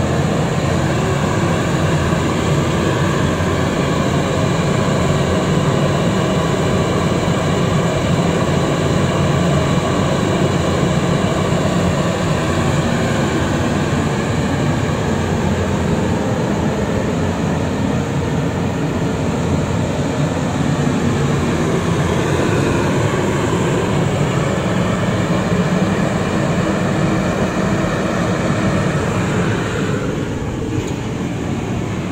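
Diesel-fired Riello oil burner running with a steady roar from its fan and flame.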